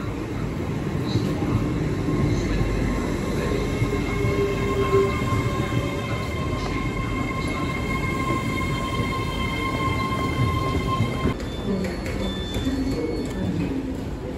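Great Western Railway Hitachi Intercity Express Train running past along the platform, its wheels rumbling. A steady high-pitched whine of several tones holds level over the rumble and cuts off about eleven seconds in.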